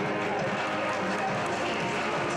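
Steady crowd chatter in a gymnasium, mixed with the footsteps of barefoot children running across foam mats.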